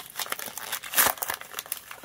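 Foil Pokémon booster pack wrapper crinkling and tearing as it is pulled open by hand: a rapid series of crackles, with a louder rip about halfway through.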